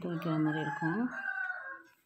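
A rooster crowing in the background: one long, high call lasting nearly two seconds, fading out near the end.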